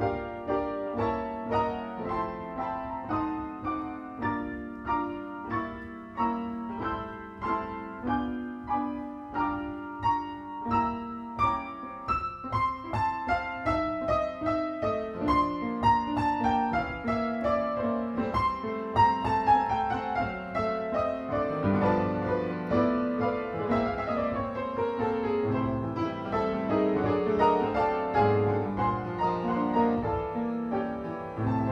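Grand piano played solo, an improvised passage: evenly paced chords over a bass line, then a series of descending runs through the middle and a fuller texture near the end.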